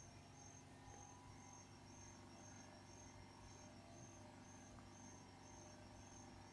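Near silence: faint room tone, with a faint high-pitched chirp repeating evenly about twice a second.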